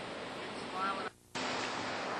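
Steady wash of ocean surf and wind noise, with a brief voice just under a second in. The sound cuts out completely for a moment just after, then the surf noise resumes.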